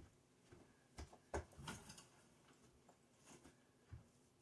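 Near silence in a small room, with a few faint short knocks a little over a second in.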